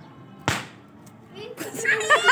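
A small stick firecracker going off once with a sharp crack about half a second in, followed by children's excited shrieks near the end.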